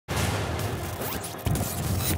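Title-sequence sound effects: crackling static and scratchy glitch noise with swishes, and a sharp hit about one and a half seconds in, accompanying the show's opening logo.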